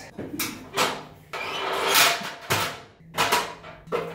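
Footsteps and a metal stepladder being climbed: a few sharp knocks and rattles, with a longer scrape about halfway through.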